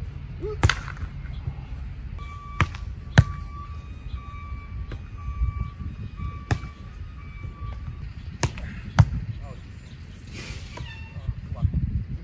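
A volleyball struck by players' hands and forearms as they pass it back and forth: about six sharp slaps of ball contact spaced one to three seconds apart, over a low steady rumble.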